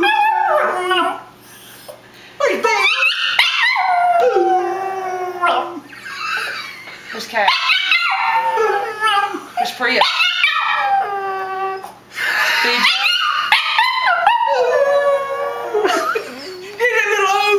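Chihuahua howling, a series of long wavering howls that rise and fall in pitch, broken by short pauses.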